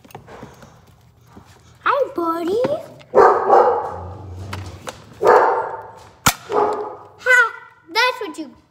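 A dog whining and barking close by, mixed with a child's voice, with rough cries a few seconds in and again about halfway through.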